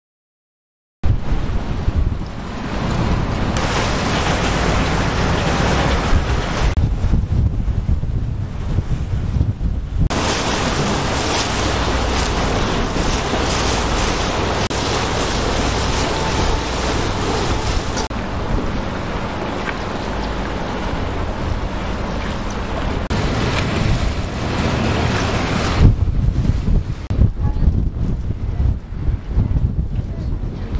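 Wind buffeting the microphone on a moving harbour tour boat, over a steady rush of water. It starts suddenly about a second in.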